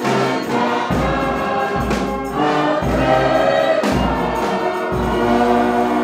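Church congregation singing a hymn together with instrumental accompaniment, a deep low note sounding about once a second beneath the voices.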